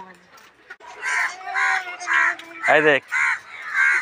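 A bird calling over and over, in short calls about two a second, with one spoken word about three seconds in.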